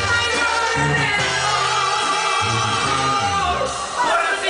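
Banda music played live over a PA, with a male singer over the band and a bass line stepping between held low notes.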